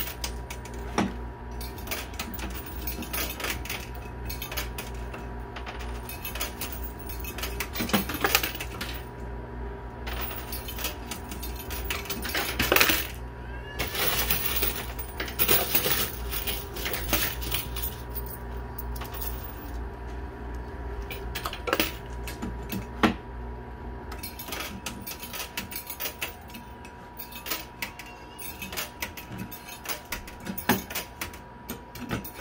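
Coins in a coin pusher arcade machine: quarters clinking and dropping against the metal playfield and the coin pile in scattered bursts, the loudest run of clinks about halfway through. A steady electrical hum from the machine runs underneath.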